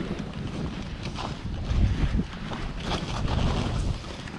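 Skis hissing and scraping through fresh powder snow while skiing downhill, with wind rushing over the action camera's microphone. The snow sound swells in a couple of louder surges as the skier turns.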